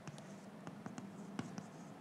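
Chalk writing on a blackboard: faint scratching with a scatter of small, sharp taps as the chalk strikes the board.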